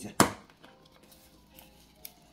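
A single sharp plastic click from handling the grated parmesan cheese canister, about a quarter second in, then quiet room tone with a smaller click near the end.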